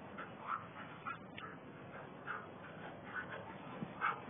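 Dogs at rough play whimpering and yipping in short, faint calls, several times and at irregular intervals.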